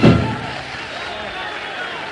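The band's final chord at the end of a live song, loudest right at the start and dying away within about half a second, then a steady murmur of the audience.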